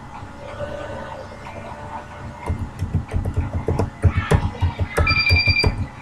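Computer keyboard being typed on, a quick irregular run of key clicks starting about two and a half seconds in. A short high steady beep sounds among them about five seconds in.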